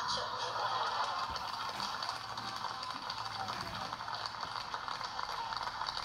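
An audience applauding steadily: a dense patter of many hands clapping, with some voices mixed in.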